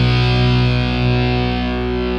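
A distorted electric guitar chord held and left ringing in a punk rock song, its brightness slowly fading.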